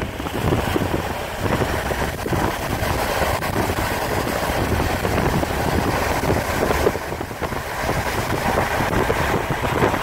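Steady road and wind noise of a moving car, heard from inside, with gusty wind buffeting on the microphone.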